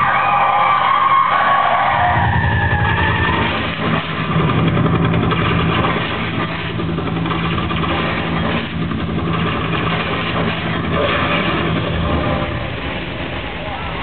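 Stunt-show car engines revving hard in a steady low pulsing rumble, with a high wavering squeal during the first two seconds.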